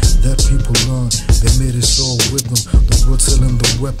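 Hip hop track: a bass-heavy beat with regular drum hits and a rapped vocal over it.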